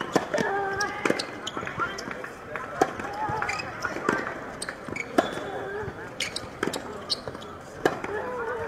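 Tennis ball struck by rackets and bouncing on a hard court during a serve and baseline rally: sharp pops at uneven spacing, about one a second.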